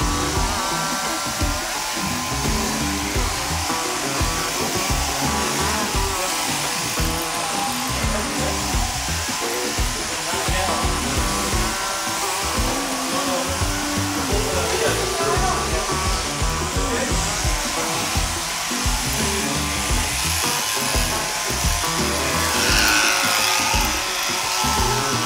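Background music over the steady whirr of electric overhead-drive sheep-shearing handpieces cutting fleece.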